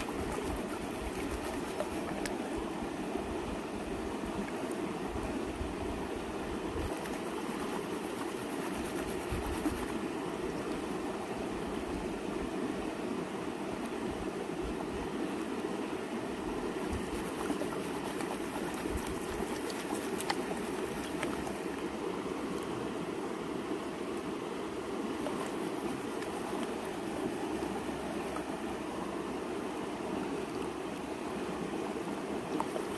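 Shallow creek water running and swishing as a plastic gold pan is dipped and swirled in it to wash gravel. The sound is a steady water noise with a few faint clicks.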